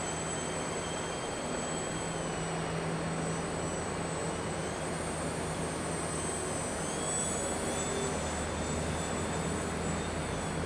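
Small electric radio-control plane's motor and propeller whining in flight, its pitch sliding up and down with the throttle and rising about seven seconds in, over a steady hum and hiss.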